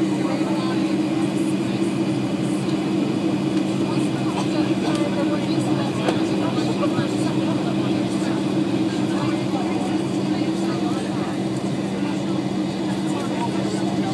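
Airliner cabin noise in cruise: the steady drone of jet engines and airflow heard inside the cabin, with a constant low hum under an even hiss.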